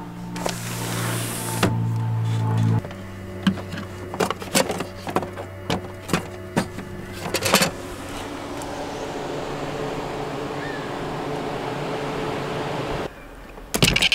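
Portable power station running as backup power: a steady electrical hum for the first few seconds, then a run of sharp clicks and knocks, then an even fan-like whir that cuts off near the end.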